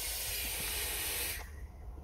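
Air hissing through a vape tank's airflow as a long drag is drawn on a Voopoo Drag 3 box mod firing at about 81 watts. The hiss cuts off about a second and a half in and gives way to a softer exhale.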